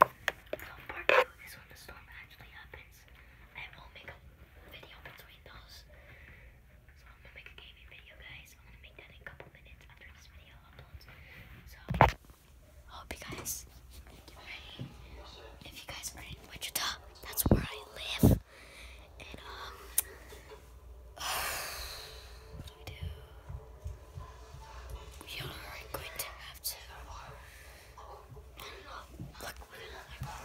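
Low whispered voices, with phone-handling rustles and a few sharp knocks: one about twelve seconds in, two more just after the middle.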